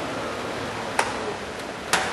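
Two short, sharp clicks about a second apart as a tablet and its magnetic keyboard cover are handled and folded together, over a steady room hum.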